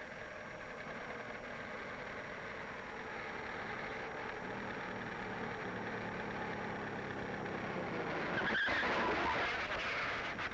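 An early-1930s car approaches, its engine hum growing slowly louder. Near the end it brakes hard, with a loud skid of the tyres as it stops.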